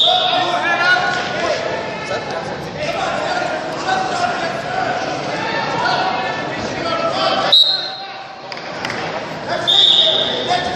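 A referee's whistle sounds in short, shrill blasts right at the start, again about seven and a half seconds in, and near the end, with shouting voices in between.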